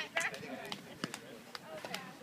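Several people's voices calling out in short bits, with a few sharp clicks in between.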